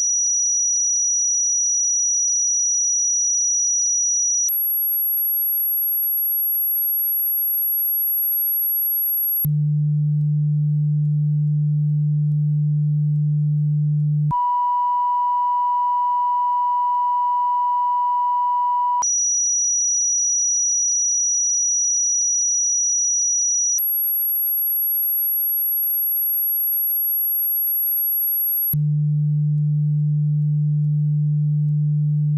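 Broadcast line-up test tones played over colour bars: a steady pure tone that steps to a new pitch about every five seconds in a repeating cycle: a high tone, an even higher whistle, a low hum, then a mid-pitched reference tone. The cycle then starts again.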